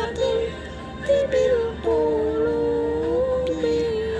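A young girl singing a slow melody in long held notes, with a second, lower melodic line sounding beneath her.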